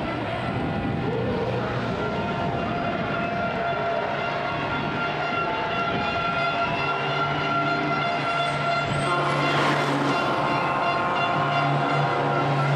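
Engines of several racing trucks running hard at high, steady revs as the pack passes, with a brief rising whine about ten seconds in.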